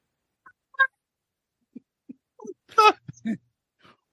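A man's stifled laughter: a few short, broken bursts, the loudest a little before three seconds in.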